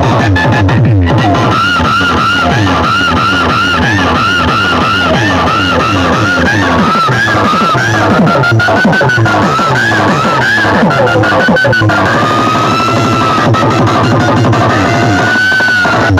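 Loud electronic DJ music played through a stack of speaker cabinets and horn tweeters on a sound-system test: heavy bass under a repeating high synth line that bends up and down about twice a second.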